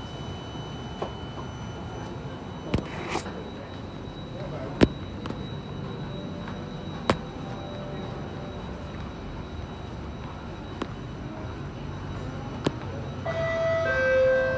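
Alstom Metropolitan metro train standing at a platform with its doors open: a steady low hum with a faint high whine and a few sharp clicks. Near the end, a chime of steady tones begins: the door-closing warning.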